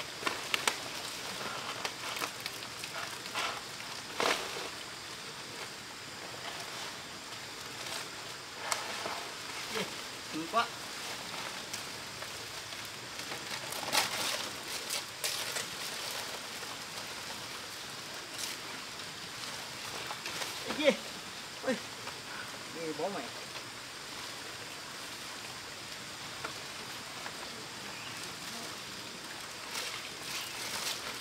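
Palm fronds rustling and swishing in short bursts as they are handled and laid over a bamboo roof frame, over a steady outdoor hiss.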